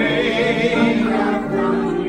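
Voices singing a song together, holding notes with a slight waver, with acoustic guitar accompanying around them.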